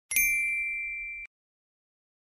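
A single bright bell-like ding, a chime sound effect, that rings and fades for about a second and then cuts off suddenly.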